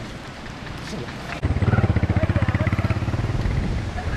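An engine running with a fast, regular low throb, starting abruptly about a second and a half in and staying loud.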